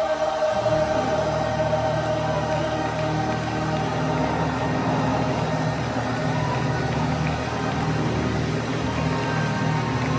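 Gospel mass choir singing with accompaniment, sustained and continuous.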